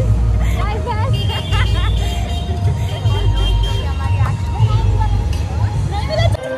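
Steady low rumble of street traffic, with women's chatter and laughter over it.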